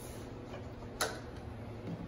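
A hydrogel screen-protector cutting machine as a sheet of film is loaded into it: one sharp click about a second in, over a faint steady hum.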